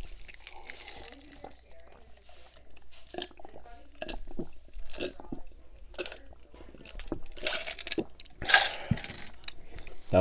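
Close-miked gulping and swallowing of a drink from a plastic cup, with wet mouth clicks, and a couple of louder breathy exhales near the end.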